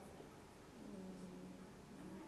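A woman's quiet, drawn-out hesitation sound, a held hum at one steady pitch lasting about a second, starting near the middle.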